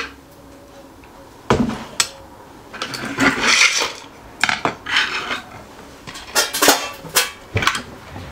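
3D-printed plastic generator parts being handled and pulled apart by hand on a workbench: irregular clicks, knocks and short scrapes as the pieces are lifted off and set down.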